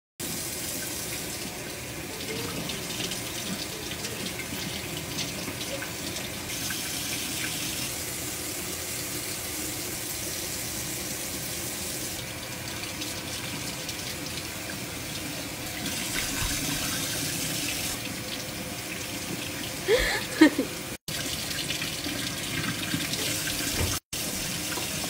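Kitchen sink faucet running steadily, a stream of water splashing into the basin. About twenty seconds in, a short pitched sound rises and falls with a couple of loud spikes, and a second later the sound cuts out for an instant.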